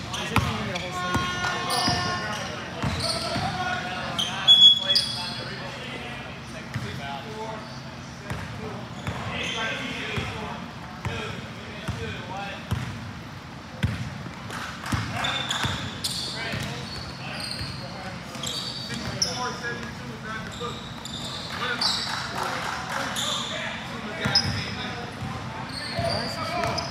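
Basketball being bounced on a hardwood gym floor, with short high-pitched sneaker squeaks and scattered voices of players and onlookers, all echoing in a large hall.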